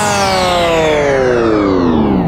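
Electronic dance music: a synthesizer chord slides steadily down in pitch with the drums dropped out, a pitch-drop transition in the track.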